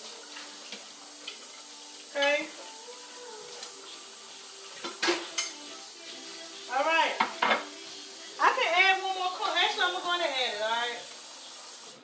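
A pot of soup simmering on a stove with a steady low sizzle, the heat just turned up, while a plate and utensils clink a few times, the sharpest clack about five seconds in.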